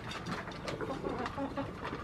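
Goats eating dry feed from plastic bowls, with quick crunching and clicking, while a bird gives a few short low calls.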